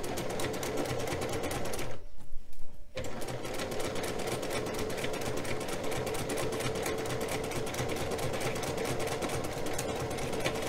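Domestic electric sewing machine stitching a seam at a fast, even pace. It stops for about a second, roughly two seconds in, then runs on steadily.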